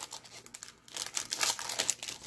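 Foil trading-card pack wrapper crinkling as packs and cards are handled, in quick crackles with a short lull about half a second in and denser crackling in the second half.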